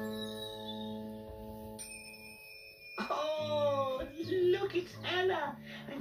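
Children's TV programme audio played through a TV speaker: a held music chord fades, a bright chime rings out about two seconds in, then a child's voice comes in over the music about a second later.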